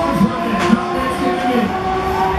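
Loud music playing from a Break Dancer fairground ride's sound system over the running noise of the spinning ride, with a short sharp clack about a third of the way in.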